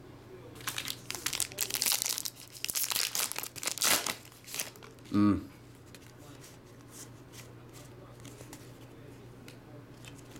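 Foil wrapper of a football trading-card pack torn open and crinkled, a run of rustling bursts lasting about four seconds, followed by a brief vocal sound a little after five seconds.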